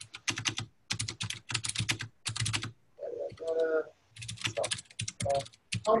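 Computer keyboard typing in several quick bursts of keystrokes, with a brief voice-like sound about three seconds in.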